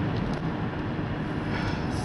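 Steady road and engine noise heard from inside the cabin of a car driving along a road.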